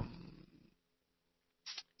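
A man's drawn-out hesitation "um" fading out, then near silence, with a brief short vocal sound near the end.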